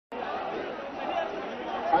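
A large rally crowd, many voices talking and calling out at once in a steady din.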